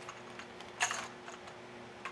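Light clicks and taps of plastic Lego pieces being handled, with one sharper click a little under a second in.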